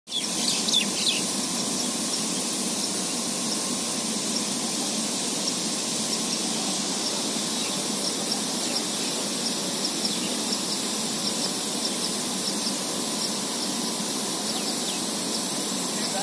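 Steady hiss of many pop-up lawn sprinklers spraying water over grass, with birds chirping over it: a few calls about a second in, then a long run of short, repeated high chirps.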